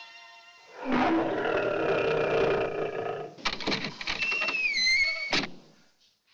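Dramatic film soundtrack sting. As the soft music fades, a loud roar-like swell builds about a second in, followed by sharp hits and a falling high whine, and it cuts off suddenly just before the end.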